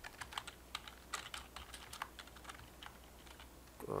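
Computer keyboard being typed on: quick, irregular key clicks as a line of code is entered.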